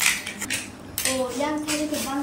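Snail shells clicking and rattling against a stainless-steel bowl and china plates as hands pick through a heap of cooked paddy-field snails. Sharp clicks come at the start and about a second in, and a short wordless voice sounds in the second half.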